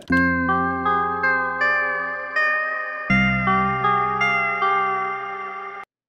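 A Prophet synth keys sample loop playing by itself: a repeating plucked synth figure, about three notes a second, over a held bass note that changes about halfway through, cutting off suddenly near the end. It plays at its original tempo, not yet stretched to match the project tempo.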